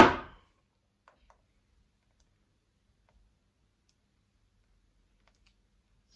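Near silence, with a few faint, small clicks about a second in and twice more near the end, from handling a hair-curling wand as hair is wrapped round its barrel.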